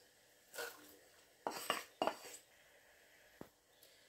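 A few short scrapes and clinks of kitchen utensils against a plate and pot as sliced onions are pushed off a plate into a cooking pot, with one sharp click near the end.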